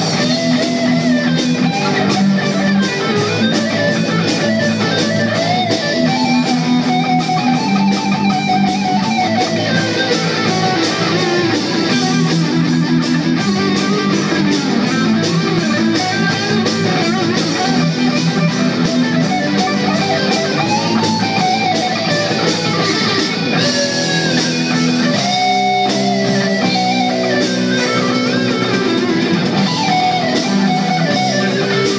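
Rock band playing live without singing: an electric guitar line that rises and falls in pitch, over electric bass and a steady drum beat.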